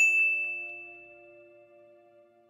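A single bright bell ding, a notification-style sound effect, struck once and ringing out, fading over about a second and a half. A soft held background chord sounds under it.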